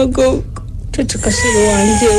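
A person wailing in long, drawn-out cries of grief: one cry breaks off just under half a second in, and a new held cry starts about a second in.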